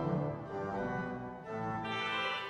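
Church organ playing a lively piece, sustained chords on the manuals over a pedal bass. The sound dips briefly about one and a half seconds in before the next chord comes in.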